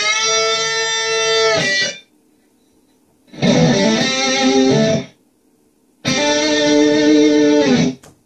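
Electric guitar playing a lead lick on the A minor pentatonic scale in three short phrases, held notes with hammer-ons and vibrato, each phrase cut off sharply, with brief silences between them.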